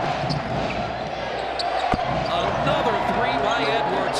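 Steady arena crowd noise from a basketball game broadcast, with a single sharp bounce of the basketball on the hardwood court about two seconds in.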